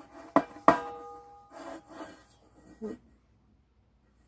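Stainless steel tea kettle's spout cap clicking shut twice in quick succession, the second click leaving a brief metallic ring, followed by a few soft rubbing sounds of the kettle being handled.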